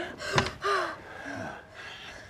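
A woman gasping for breath in labour pains: a sharp intake of breath, then two short moans falling in pitch.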